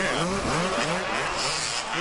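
Supercross motorcycle engines revving hard and easing off in quick repeated rising-and-falling swells, several bikes overlapping, as they race over the jumps.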